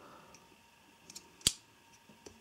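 Small metal handling sounds: a couple of faint ticks, then one sharp click about a second and a half in, as a small folding knife's steel blade is worked in and out of the jaws of a digital caliper.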